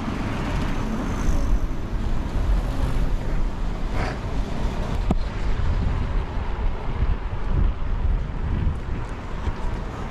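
Steady rumble of wind on the microphone and bike tyres rolling over the planks of a wooden bridge deck, with a sharp click about five seconds in.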